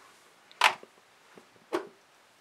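Two brief light clicks about a second apart, as small metal hotend parts are picked up off a wooden desk, against quiet room tone.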